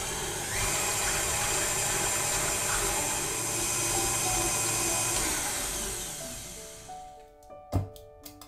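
Stand mixer running, its wire whisk beating egg whites to a foam in a stainless steel bowl. The motor winds down and stops about six to seven seconds in, followed by a single sharp knock near the end.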